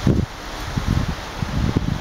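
Wind buffeting the microphone outdoors: irregular low rumbles, strongest at the start and through the middle, over a steady rustling hiss of wind in leaves.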